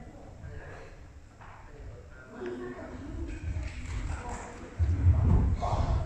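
Indistinct, low voices in a large hall, with loud low thudding that starts about five seconds in.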